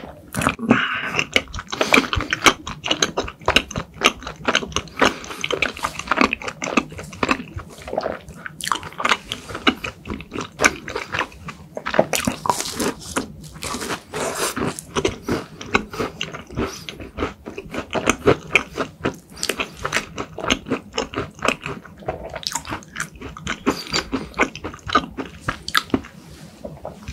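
Close-miked eating sounds: a person chewing cream-filled crepe cake, with a steady run of quick mouth clicks and lip smacks and sucking cream off a finger.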